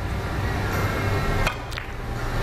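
Three-cushion carom billiard shot: the cue tip strikes the cue ball and the balls click sharply against each other a few times about one and a half seconds in, over a broad background noise that swells beforehand.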